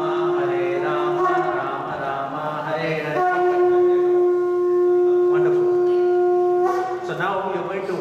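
Conch shell (shankha) blown in long, steady held notes: one blast ends about a second and a half in, and a second starts about three seconds in and stops near seven seconds, with voices chanting beneath.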